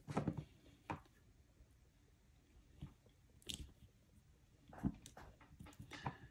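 Faint handling sounds: a few soft, scattered clicks and rubs as fingers press a tape-wrapped DCC decoder down onto tack on top of a model locomotive's motor.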